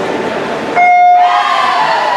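Electronic swim-meet starting signal sounding one steady beep, about half a second long, a little under a second in, starting the race. Crowd chatter before it, and shouting and cheering rising after it.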